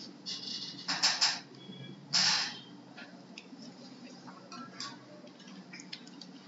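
A low steady hum with two short bursts of noise, about one and two seconds in, and a few faint clicks after them.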